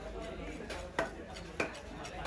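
Cleaver chopping catfish innards on a wooden log chopping block. Two sharp chops land about a second in and half a second later.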